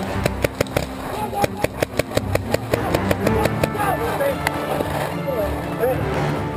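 Paintball markers firing a rapid string of shots, about five a second, for the first three and a half seconds, followed by shouting voices.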